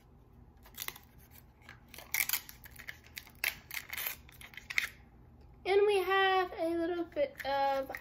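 Crisp crackling and rustling as a Mini Brands toy capsule's printed wrapper is peeled open by hand, a scatter of short crinkles over the first five seconds. A girl's voice starts talking near the end.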